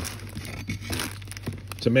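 Faint handling noise: quiet rustling with a few light clicks as tools and a hatchet are moved about by hand.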